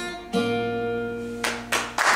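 Acoustic guitar closing the song: one chord strummed about a third of a second in and left to ring, then two quick sharp strokes near the end.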